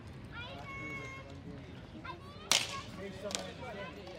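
A sharp crack of a ball hockey stick striking at a faceoff, about two-thirds of the way in, followed by a smaller click a second later. A player's voice is heard shortly before.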